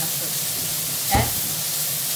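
Beef steak sizzling steadily in a hot iron pan, with a short knock about a second in.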